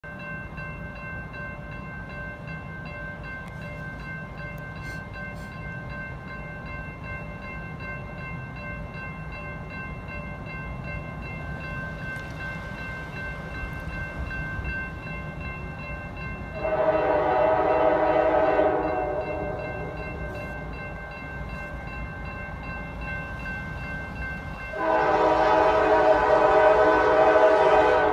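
Approaching diesel freight locomotive, a low rumble under faint steady high tones, then its air horn sounding a chord of several notes in two long blasts: one of about two seconds midway, and a second starting about 25 seconds in and still sounding at the end.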